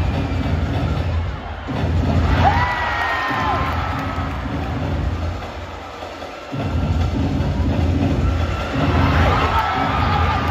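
Cheerdance routine music with a heavy bass beat over an arena sound system, and a crowd cheering and screaming over it. The beat breaks off briefly twice, and shrill screams rise over it about two and a half seconds in and again near the end.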